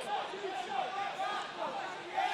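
Faint, indistinct voices of people in a competition hall, overlapping.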